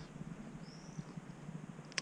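Quiet outdoor background with one faint, short, high chirp just under a second in, from a distant bird, and a sharp click near the end.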